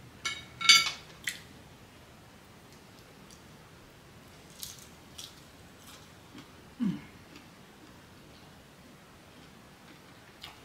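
Fork clinking and scraping against a ceramic plate, a few sharp ringing clicks in the first second and a half, then fainter clicks and chewing. A short low vocal sound falling in pitch comes about seven seconds in.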